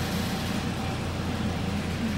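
Steady low hum with an even rushing noise over it, from the running machines of a laundromat.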